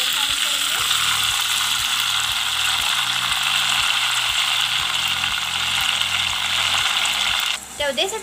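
Yogurt-marinated boneless chicken sizzling loudly in hot oil in a pot as it is added, a steady frying hiss that cuts off suddenly near the end.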